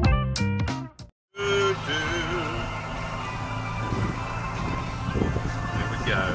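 Background music with a beat for about a second, cut off abruptly. Then a John Deere 6420 tractor's engine runs at a steady note, heard from inside the cab.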